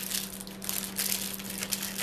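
Crinkling and rustling of a jewelry display card and its packaging being handled close to the microphone, in irregular crackles. A steady low hum runs underneath.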